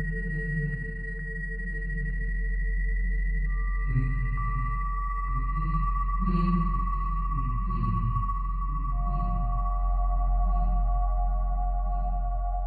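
Dark ambient background music: a low drone under long, sustained ringing tones. A new tone comes in about a third of the way through, and another, lower one near the end.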